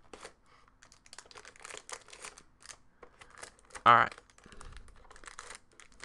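Wrapped packs of 2013 Panini Playbook football cards crinkling and rustling in quick, irregular crackles as they are pulled out of the box tray and gathered in the hand.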